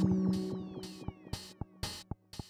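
Electronic music: a sustained low synth chord fading out, under a regular noisy hi-hat-like hit about twice a second and falling synth glides, with short sharp clicks coming in near the end.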